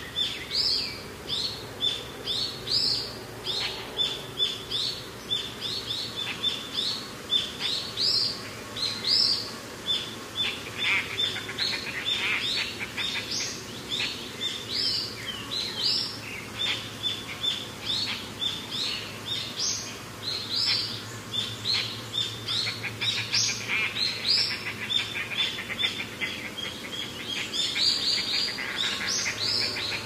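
A chorus of small birds chirping and calling without pause, short rising chirps repeating several times a second.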